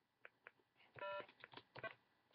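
Faint clicks, with a short electronic beep about a second in and a briefer one near the end.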